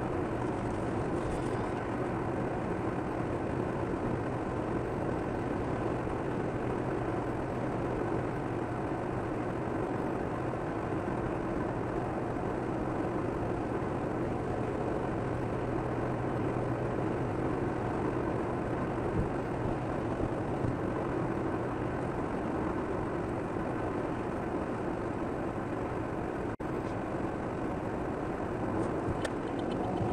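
Steady road noise inside a car cruising at about 85 km/h on a wet expressway: an even drone of tyres and engine heard from the cabin.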